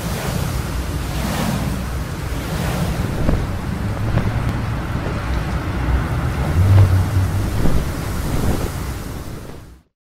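Intro sound effect of rushing wind with a low rumble under it, fading out just before the end.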